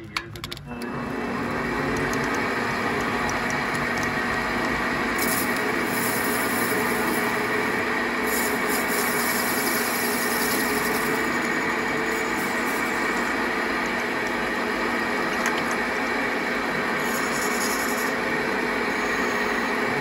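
Metal lathe starting up about a second in and then running steadily, spinning a carbon fiber tube in its three-jaw chuck. A few short spells of higher hiss come as the cutting tool works the tube.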